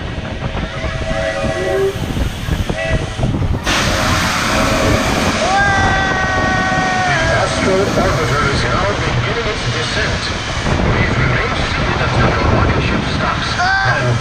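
Wind rushing loudly over the camera's microphone as the rocket ride circles at speed. It is joined by snatches of voices and a single held note about six seconds in.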